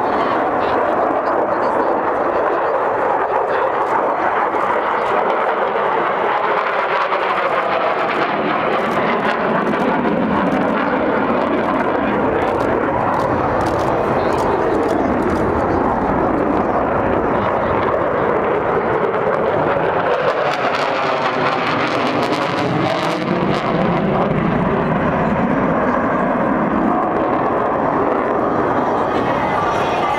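Military jet aircraft flying over at an air show display, its engine noise loud and continuous. The pitch sweeps up and down twice as it manoeuvres past.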